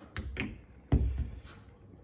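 Handling sounds from a cordless drill being set in place against the floor, not yet running: two light clicks, then a dull thump about a second in.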